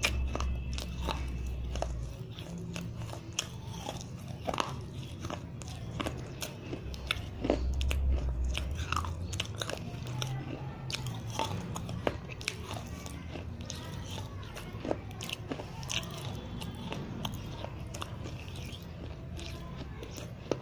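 Dry white chalk-paste (khadi) diya being crunched and chewed in the mouth, close to the microphone: many small, irregular crunches and clicks, with low rumbles in the first two seconds and again about eight seconds in.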